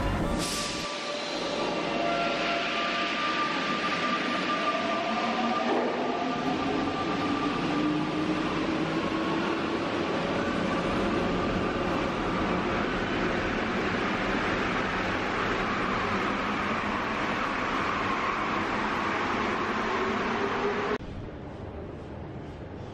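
Santiago Metro Line 5 rubber-tyred train moving through an underground station. There is a steady running noise, and the electric traction motors whine, the main tone rising slowly in pitch as the train gathers speed. The sound cuts off suddenly near the end.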